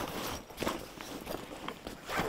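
Faint rustling of a thick fabric backpack, made from recycled plastic bottles, being handled and opened, with a few small clicks.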